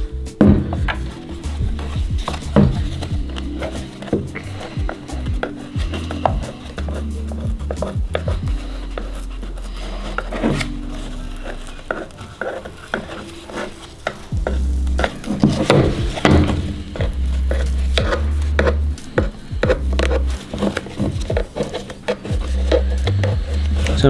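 A screwdriver prying and scraping at a rubber seal on a plastic heater blower motor housing, with many small clicks and scrapes of tool on plastic. Steady background music with a pulsing bass runs underneath.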